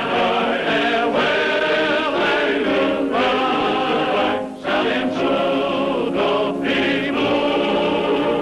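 Background music: a choir singing.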